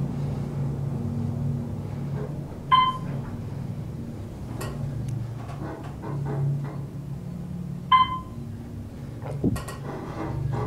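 Otis hydraulic elevator car rising, with a steady low hum of the running car throughout. A short electronic floor-passing beep sounds twice, about three seconds in and again near eight seconds, as the car passes floors.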